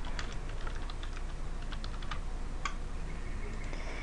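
Computer keyboard typing: a run of irregular, uneven keystrokes.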